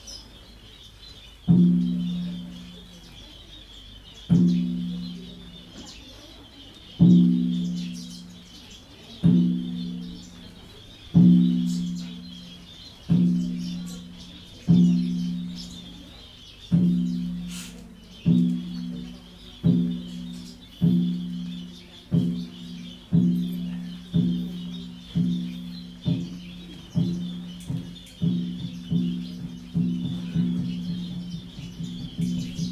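A low-pitched Buddhist temple bell struck about twenty times at a quickening pace, from nearly three seconds between strokes to under a second apart by the end, each stroke ringing and fading. Steady high chirping runs behind it.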